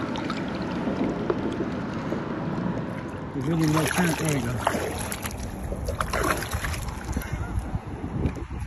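A large drum splashing at the water's surface beside a boat hull, with a few sharp splashes in the middle, over steady wind and water noise.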